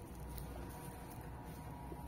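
Faint steady background noise, mostly a low rumble, with no distinct event.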